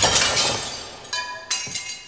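Glass smashing, shards ringing and clinking as it dies away, with two smaller crashes about a second and a second and a half in.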